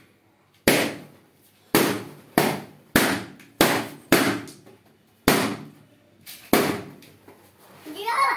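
Balloons bursting one after another: about nine sharp pops at uneven intervals, each with a short ringing tail.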